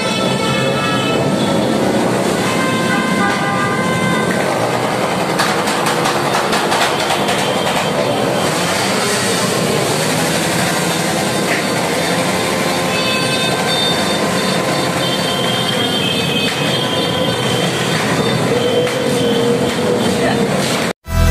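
Motor scooters riding past with engines running and rising and falling in pitch, mixed with horns tooting in held notes and voices.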